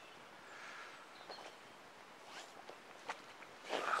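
Faint splashing of a hooked roach thrashing at the water surface as it is drawn toward the landing net, with a few light ticks in the second half.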